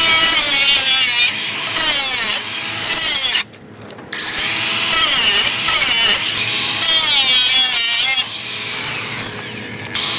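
Ridgid 18V cordless angle grinder cutting bent steel anchor bolts down flush with a concrete slab: a loud, high whine that wavers in pitch as it cuts. It stops for about a second some three and a half seconds in, then starts cutting again.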